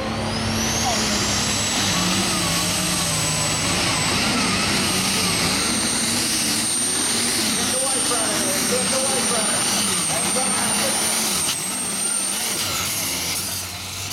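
Case IH diesel pulling tractor running at full power down the pull track, its engine note wavering. A high turbo whine climbs in the first second, holds steady, and drops away near the end as the pull winds down.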